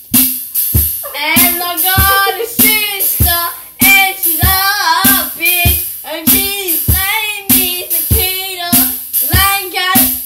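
A boy singing along to a recorded song with a steady drum beat of about two strokes a second; the singing comes in about a second in.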